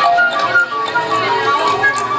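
Silver concert flute playing a melody of held notes that step from pitch to pitch, over a kalimba's plucked metal tines.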